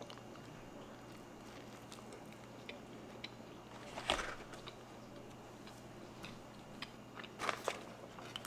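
A person quietly biting into and chewing a burger, with faint mouth clicks and one louder short click about four seconds in.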